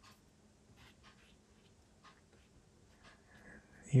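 Faint scratching of a brush laying oil paint on canvas: a few short, separate strokes.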